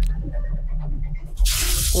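Action-film soundtrack: a low rumbling score, then about one and a half seconds in a sudden loud burst of noise as a car is wrecked on screen.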